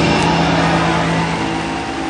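Concert audience applauding at the end of a song, with the song's last held note dying away in the first second and a half; the applause slowly tails off.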